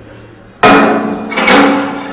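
Green glass wine bottle knocking twice against the steel spouts and trough of a multi-spout gravity bottle filler as it is taken off after filling. The knocks come about half a second in and a second later, each ringing briefly.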